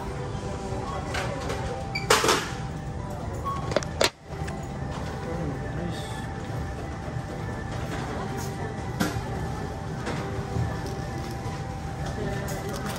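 Supermarket background with music playing over the store sound, broken by a few sharp knocks and clatters as a shopping trolley is pushed and groceries are handled at the checkout.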